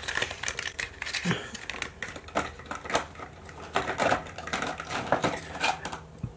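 Small makeup tube and its cardboard box being handled: an irregular run of light clicks, taps and rustles as the product is packed back into its box.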